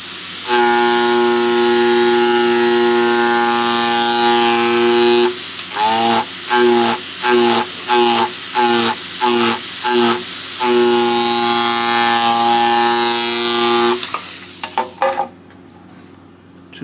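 Micromotor with a reciprocating hammer handpiece buzzing as its blunt polished tip hammers on leather, a steady pitched hum with a high hiss. For several seconds in the middle it cuts in and out about twice a second, then runs steady again and stops near the end.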